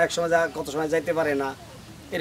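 A man speaking in Bengali for about a second and a half, then a pause.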